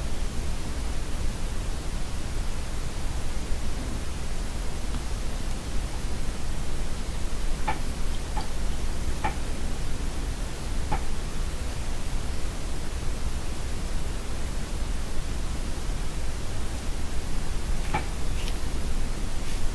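Steady hiss throughout, with a few faint, short squeaks or rubs of latex gloves as the hands move, about eight to eleven seconds in.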